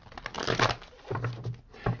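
A tarot deck being shuffled by hand: a dense papery rustle about half a second in, softer card handling after it, and a sharp snap of cards near the end.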